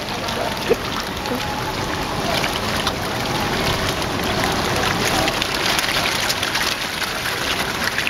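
Hundreds of feeding koi churning the pond surface: a steady rush of water splashing and slurping, with many small splashes mixed in.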